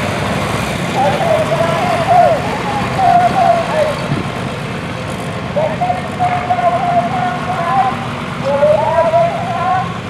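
Antique John Deere tractor engine running steadily as it moves down the pull track with a sled behind it, with people's voices talking over it several times.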